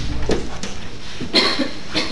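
A person coughing once, a short burst about one and a half seconds in.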